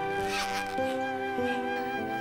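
Background music of long held notes that change pitch a couple of times. Under it, the zipper of a school backpack is pulled in short strokes as the bag is opened.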